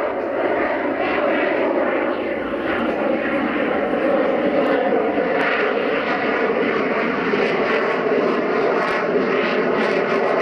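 Lockheed Martin F-22 Raptor's twin Pratt & Whitney F119 turbofan jet engines running in flight: a loud, steady jet roar as the fighter climbs, with a few faint tones sliding slowly lower.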